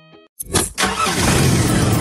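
Soft plucked background music ends. About half a second in, a sudden loud, dense, noisy sound effect starts and runs on, opening the radio station's jingle.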